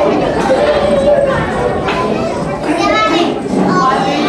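A group of young children's voices chattering over one another.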